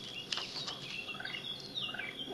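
Faint high bird chirps and a short falling whistle in the background, with a few soft clicks of plastic stencil sheets being handled.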